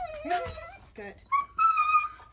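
A dog whining: a thin, steady, high-pitched whine held for about a second in the second half, the sound of an excited dog waiting to be released to run.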